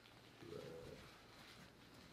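Near silence: room tone, with a man muttering one low word under his breath about half a second in.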